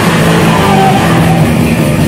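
Live rock band playing loud with electric guitars, bass and drum kit, an instrumental passage with held low notes and a few high sustained guitar notes over the drums.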